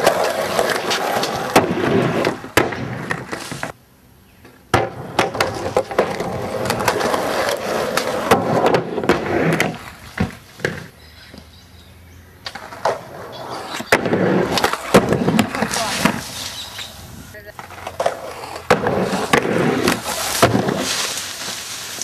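Skateboard wheels rolling over plywood ramps and rough ground, with repeated sharp clacks and thuds as the board hits and lands. The rolling drops out briefly about four seconds in and is quieter for a couple of seconds near the middle.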